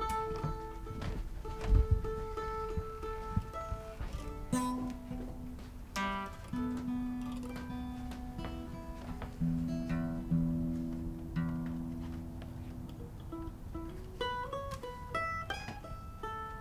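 Instrumental opening of a folk song played live on acoustic guitar and mandolin: picked notes that ring and overlap at steady pitches, with a low thump about two seconds in.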